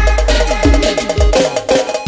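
Instrumental piseiro music: a fast, repeating riff of short high notes over deep bass notes that slide down in pitch, with percussion and no vocals.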